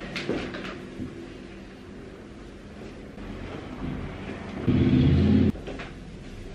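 A cotton bedsheet rustling as it is shaken out and pulled over a mattress on a wooden bed frame. Near the end comes a loud low rumble, lasting under a second, that stops suddenly.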